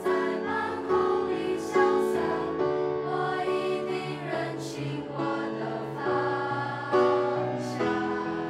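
Mixed choir of boys and girls singing a Chinese art song in harmony, with chords changing every second or so, accompanied by piano.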